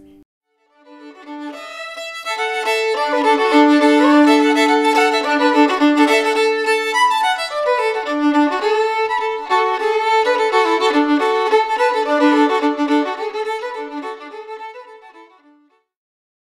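Solo fiddle playing a lively tune, often sounding two strings together. It fades in just after the start and fades out near the end.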